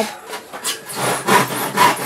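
Handsaw cutting through a wooden board, with rasping back-and-forth strokes about two a second.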